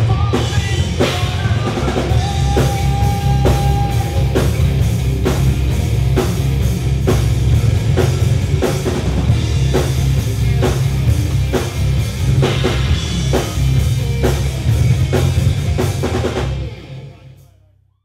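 Live rock band playing an instrumental passage: electric guitars, bass guitar and a drum kit with regular, hard-hit drum strokes. The music fades out near the end.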